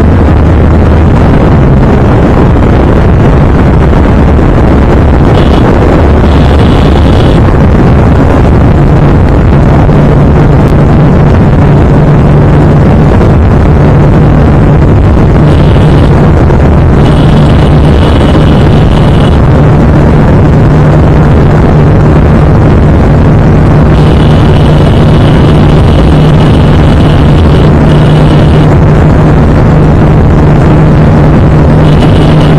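TVS Apache RTR 160 2V's single-cylinder engine running hard at high speed, about 100 to 120 km/h near its top speed, under loud wind rush on the camera microphone. A steady engine note holds under the wind noise.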